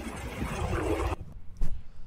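Wind buffeting a handheld camera's microphone, with road noise from a bicycle ride. It cuts off suddenly about a second in, followed by a single click.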